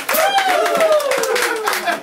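Audience clapping, with one voice calling out a long, high note that slowly falls in pitch.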